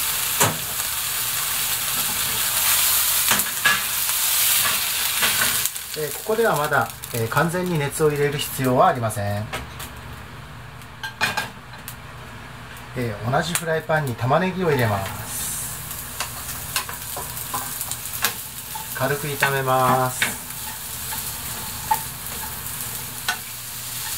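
Food sizzling in hot oil in a frying pan, first seared chicken breast pieces and later sliced onions, with light clicks of a utensil against the pan. The sizzling breaks off suddenly about six seconds in and comes back about two-thirds of the way through.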